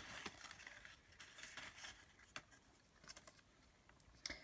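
Faint rustling and a scattering of small clicks and ticks from folded paper name slips being handled and opened as names are drawn.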